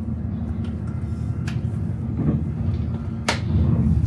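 Steady low rumble of an ICE high-speed train running, heard inside the passenger car. Over it come a few clicks and knocks from a first-class seat's lever and mechanism being worked, the sharpest about three seconds in.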